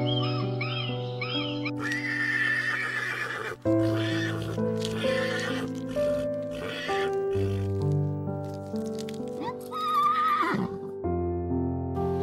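Sustained background music over animal sounds: a harsh animal call two seconds in, then a horse whinnying with a quavering pitch near the end.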